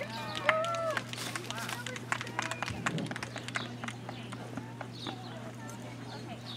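Horse cantering on soft arena dirt, its hoofbeats a run of dull thuds, with a brief call from a voice about half a second in and spectators' voices in the background.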